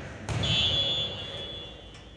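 A thud, then a referee's whistle blown once: a shrill blast that fades over about a second, the signal that lets the server serve.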